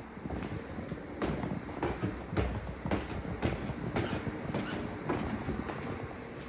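Footsteps going down wooden stairs: a steady run of thuds, about two a second.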